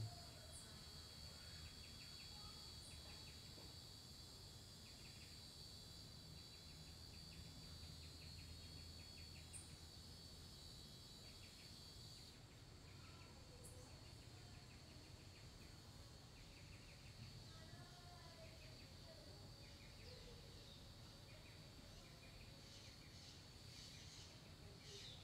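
Near silence with faint garden ambience: a steady high-pitched insect drone, short chirping trills repeating, and a few soft bird calls in the second half.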